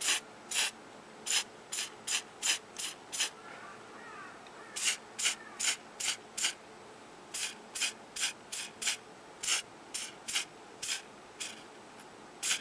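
Aerosol spray-paint can sprayed in short hissing bursts, two or three a second, coating a small plastic toy part. The bursts come in groups, with short pauses about four seconds in and again about seven seconds in.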